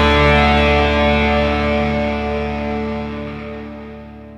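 Grunge rock band's last chord, distorted electric guitars held and ringing as the track fades steadily away at its end.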